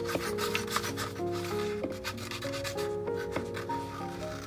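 Scissors cutting through a sheet of printed paper in a run of short snips that thin out after a couple of seconds, over soft instrumental background music.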